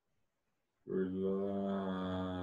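After near silence, a low male voice starts chanting a single long tone about a second in, holding one steady pitch: a sustained mantra-style chant.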